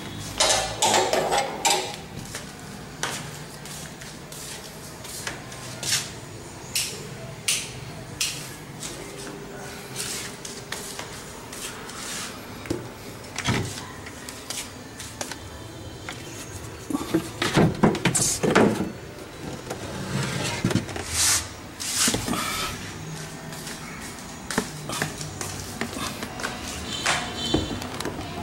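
Scattered knocks, taps and handling noises of hands working around a wooden cabinet and a plastic tub, with a denser run of louder knocks about two-thirds of the way through.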